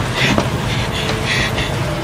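Strong storm wind blowing: a steady rumble with brief rushing gusts.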